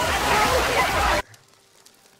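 Water gushing and splashing out of a tipped-over barrel, with voices shouting over it; the sound cuts off suddenly a little past the middle, leaving quiet.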